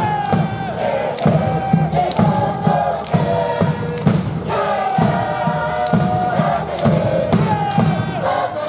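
A university cheer squad singing its cheer song together over a band, with a bass drum beating about twice a second.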